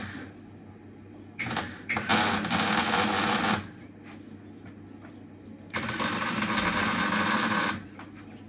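MIG welding on steel: two welds about two seconds each, a loud even crackle that starts with a couple of pops, with a low steady hum between them.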